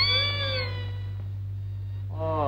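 Film background score: a single sustained melodic note bending slowly up and down, then fading out within the first second. A steady low hum of the old soundtrack runs underneath.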